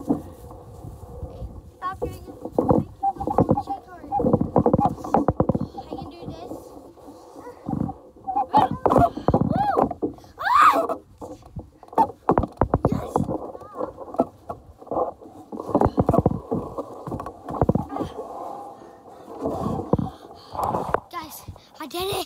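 A child's voice, indistinct and muffled, with on-and-off vocal sounds and exclamations, mixed with short knocks and rustles.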